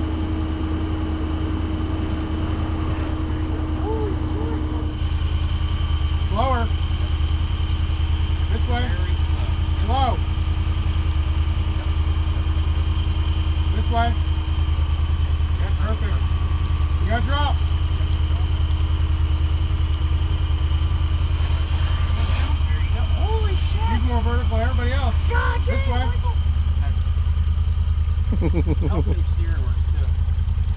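Side-by-side UTV engine idling steadily, with short, scattered voice calls over it.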